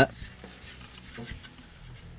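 A hard plastic model kit body being handled and turned in the hands: faint rubbing with a few small clicks.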